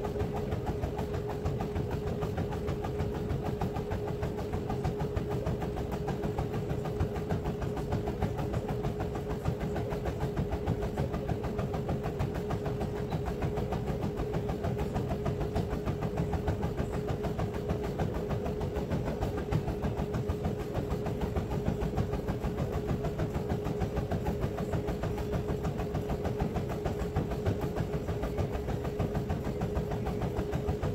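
Treadmill running at a steady jogging pace: the motor gives a steady whine while the belt and deck carry the quick, rhythmic thud of running footfalls.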